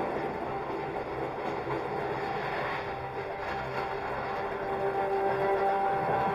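Hogwarts Express ride carriage running steadily along its track, with the ride's soundtrack music playing over it in held notes.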